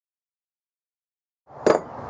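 Complete silence for about a second and a half, then faint background noise comes in with a single sharp click near the end.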